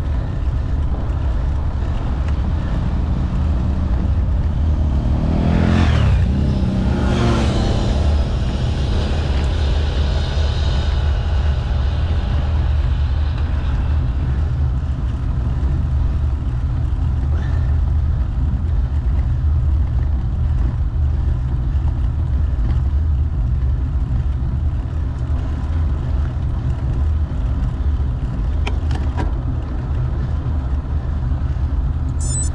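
Steady low rumble of wind and road noise on a moving action camera, with a vehicle passing about six seconds in, its pitch falling as it goes by. A few short clicks near the end.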